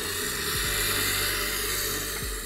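Espresso machine's hot-water tap running into a bucket, a steady hiss of spouting hot water and steam.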